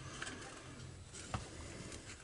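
Faint handling noise of the Echo SRM-22GES trimmer's plastic control-handle parts and wires being fitted together by hand, with a small click a little over a second in.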